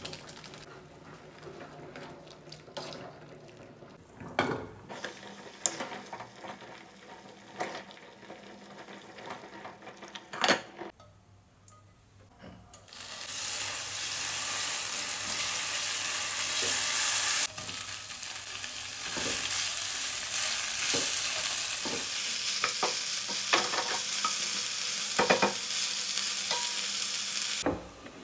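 Chopped red chili sizzling in hot oil in a nonstick frying pan, stirred with a spatula; the steady sizzle starts about halfway through, with the spatula clicking against the pan now and then. Before it come scattered knocks and clinks at a pot.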